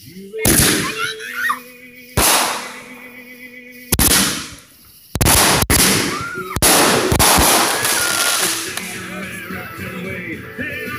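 Consumer aerial fireworks going off: sharp, loud bangs about half a second, two seconds and four seconds in, then a quick run of bangs between about five and seven seconds, followed by a steadier spell of noise.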